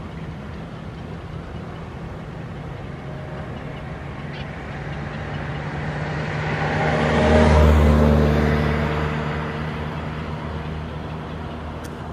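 A motor vehicle passes close by: its engine and tyre noise grow louder over several seconds, peak about two-thirds of the way through, then fade away.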